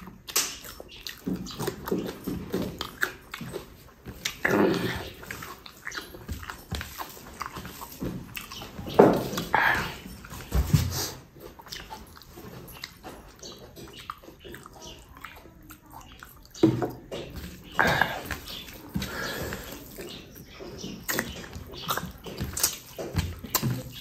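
Close-miked eating: a person chewing mouthfuls of rice and egg curry eaten by hand, with wet smacking and squelching mouth sounds. It comes in irregular bursts, several of them louder.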